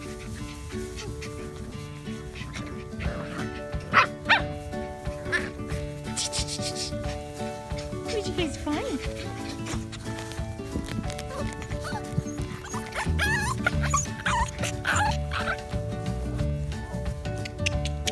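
Puppies yipping and giving short high barks several times over background music, with the two loudest calls close together about four seconds in.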